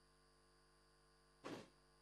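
Near silence: faint steady hum, with one brief soft noise about one and a half seconds in.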